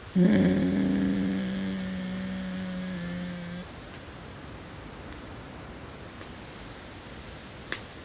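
A person's voice holds one long, low, steady note, like a drawn-out moan or chanted tone. It starts suddenly, fades over about three and a half seconds, and stops. Only faint hiss follows.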